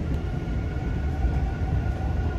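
Subway train pulling out of a station, heard from inside the car: a steady low rumble of the running train with a faint, steady whine.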